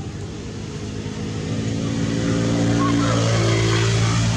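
A motor engine hums steadily and grows louder from about a second and a half in, rising a little in pitch near the end, as if a vehicle is coming closer.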